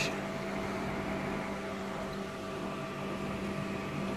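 Steady machine hum, a few held tones over a soft even hiss, with no taps or knocks.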